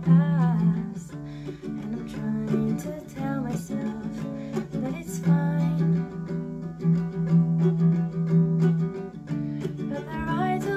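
Ukulele played while a woman sings along, her voice holding long notes over the plucked chords.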